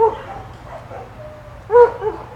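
A dog barking: one bark at the start and another loud bark near the end, part of a run of repeated barks.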